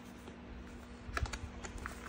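Small scattered clicks and taps of a hand pressing tape and the wire cover down along an e-bike's down tube, with a quick cluster of them about a second in.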